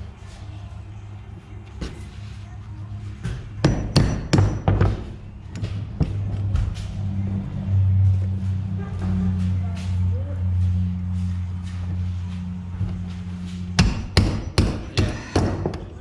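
Hammer striking the steel links of a manure spreader's new apron roller chain, in two bursts of quick metallic blows, one about four seconds in and another near the end, as the links are knocked into place. A steady low hum runs under the middle stretch.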